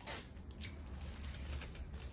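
Faint handling of clear plastic gift wrap and sticky tape: a short rip of tape pulled from a desk dispenser at the start, then light crinkles and taps as the plastic is pressed down.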